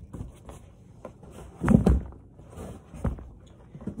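Cardboard shipping box and bolts of fabric being handled: a few light knocks and rustles, a heavier thump just under two seconds in and another knock about three seconds in.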